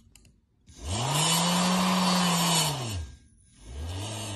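Small electric motor of a self-balancing cube's reaction wheel whirring as it spins up, holds speed and spins down over about two seconds. A second, shorter and lower spin-up and spin-down follows near the end, as the wheel tips the cube up onto its corner.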